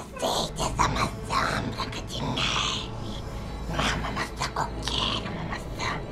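A young man's breathy, hissing voice speaking in short phrases, over a low steady hum.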